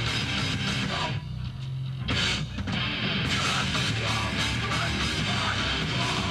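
Hardcore band playing live: distorted electric guitars, bass and drums. About a second in, the band thins out briefly, then the full band comes back in with a hit just after two seconds.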